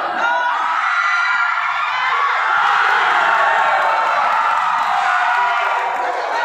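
Crowd of spectators cheering, yelling and screaming together, building to its loudest around the middle and easing off near the end.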